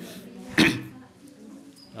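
A single sharp, cough-like burst from a person close to the microphone, about half a second in, during a short pause in the talk.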